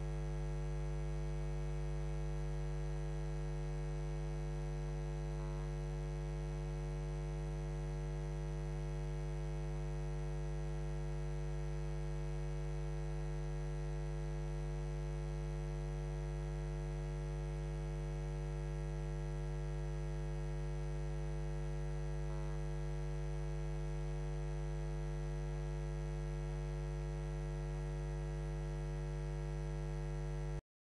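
Steady electrical mains hum: a low, unchanging buzz with a stack of higher overtones, and nothing else audible over it.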